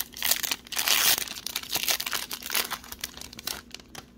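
Plastic trading-card pack wrapping being torn open and crumpled by hand: a dense run of crinkling and crackling that is loudest about a second in and dies away near the end.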